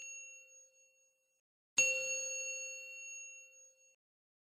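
A bell-like chime sound effect: one clear ding struck a little under two seconds in, ringing and fading away over about a second and a half. The tail of an earlier ding dies out just at the start.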